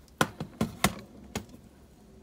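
An HP EliteBook 840 G2 laptop being flipped over and set down on a wooden desk: about five short knocks of its case against the desk and hands, all within the first second and a half.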